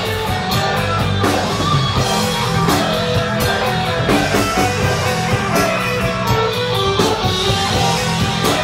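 A folk metal band playing live: distorted electric guitar, bass and a drum kit keeping a steady beat, with a violin bowing a melody along with them.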